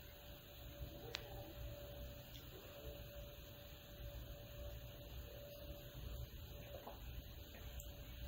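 Very quiet background with a faint steady hum and a low rumble, and one light click about a second in.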